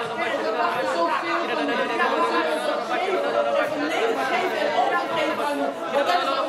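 Many voices praying aloud at once, overlapping into a continuous murmur of speech in a hall.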